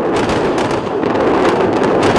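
A loud, sustained crackling roar, dense with small sharp cracks, of the kind heard in combat footage of fire or rocket launches.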